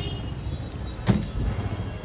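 An empty cardboard carton being handled and moved, with one sharp knock about a second in, over a low steady rumble.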